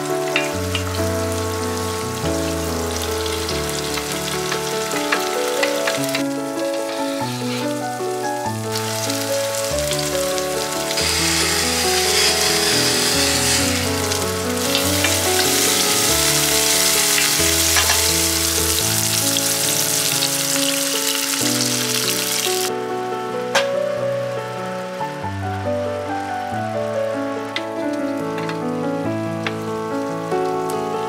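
Garlic, onion and mushrooms sizzling in olive oil in a frying pan while being stirred with a wooden spoon, the sizzle loudest through the middle stretch. Background music plays alongside.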